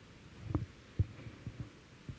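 A few dull, low thumps, four in all, irregularly spaced; the loudest comes about a second in.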